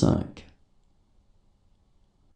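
The end of a spoken French number read aloud, closing with a crisp consonant click about half a second in, then faint room tone.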